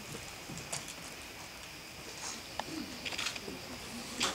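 Handling and movement noise in a hall: scattered small clicks, rustles and shuffling, with a few faint, low murmured sounds.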